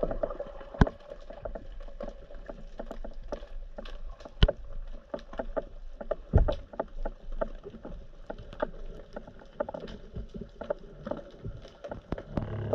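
Underwater sound picked up by a camera in its waterproof housing: a low rush of water with many irregular clicks and knocks, the loudest three about one, four and a half, and six and a half seconds in.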